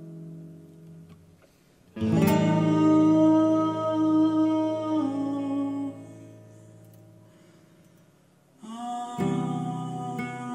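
Acoustic guitar chords strummed and left to ring: a strong chord about two seconds in sustains for several seconds and then fades, and another chord is struck near the end.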